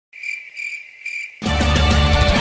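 A cricket-chirping sound effect: a high, steady trill that swells three times, about half a second apart. About one and a half seconds in, loud music with bass starts abruptly.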